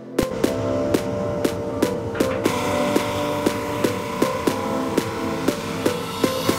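Background music with a steady beat of about two hits a second.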